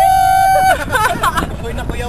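A voice glides up into a long held sung note that breaks off under a second in, followed by brief vocal sounds. A steady low road rumble from inside a moving car runs underneath.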